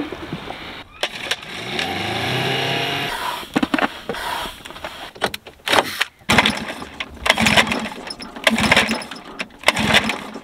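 A small outboard motor starts and revs up, rising in pitch, followed by a string of short knocks and clatter.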